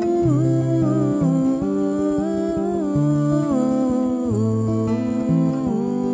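Acoustic guitar picked in a gentle, steady pattern, with a woman's wordless humming melody gliding over it.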